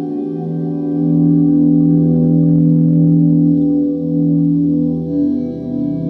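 Electric guitar volume-swelled through a reverb pedal's 'epic' setting, a plate reverb with modulation: soft sustained notes fading in over the first second, with a long tail still sounding underneath. The held notes change a little after five seconds in.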